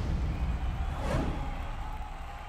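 Low rumble of a cinematic promo trailer soundtrack, with a whoosh sweep about a second in, the rumble slowly fading.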